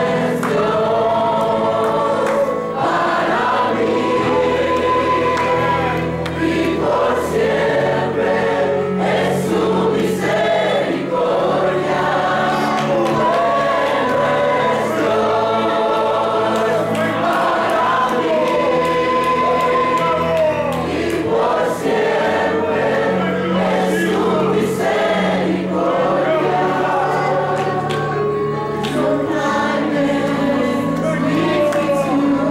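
Youth choir singing a gospel worship song, led by a woman singing into a microphone, over a steady beat.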